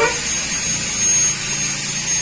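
Steady mechanical background hum with a constant high-pitched whine; a low hum firms up about halfway through.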